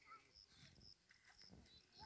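Near silence, with faint high-pitched chirps repeating a few times a second.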